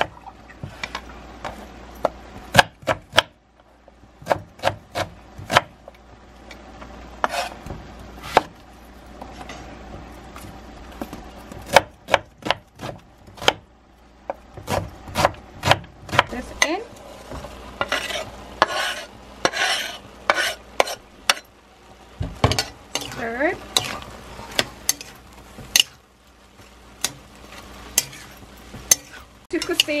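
Kitchen knife dicing an onion on a wooden cutting board: irregular sharp knocks of the blade on the wood, coming in clusters, with a quieter stretch early on and some scraping between strokes.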